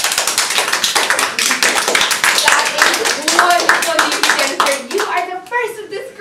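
A few people clapping their hands, with voices talking over the claps; the clapping thins out and stops about five seconds in.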